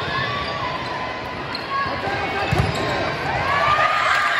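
A volleyball rally in a large hall: the ball is struck and bounces, with a heavier thud about two and a half seconds in. Players and spectators call out over it, rising near the end as the point is won.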